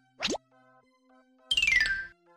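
Cartoon transition sound effects over soft background music: a quick rising whistle near the start, then a louder falling whistle over a noisy rush about a second and a half in.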